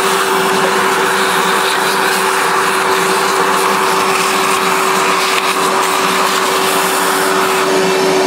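Vacuum cleaner running steadily with a constant hum, its hose nozzle sucking stale coffee grounds out of the opened burr chamber of a commercial espresso grinder.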